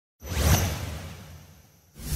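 A whoosh sound effect with a deep rumble underneath: it swells in suddenly about a fifth of a second in and fades away over about a second and a half. A second whoosh begins at the very end, as the intro logo appears.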